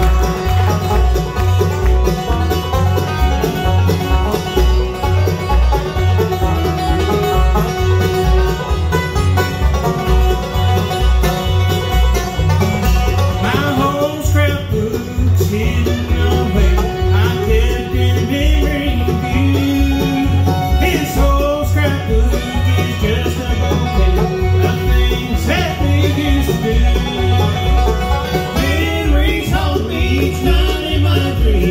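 Bluegrass band playing live: banjo rolls and guitar over a steady, even bass beat. A sliding lead melody joins about halfway through.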